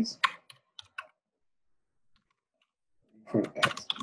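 Computer keyboard typing: a quick run of about half a dozen sharp keystrokes in the first second, then quiet.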